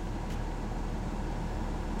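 Steady low hum inside a pickup truck's cab, with a faint click about a third of a second in as a radio button is pressed.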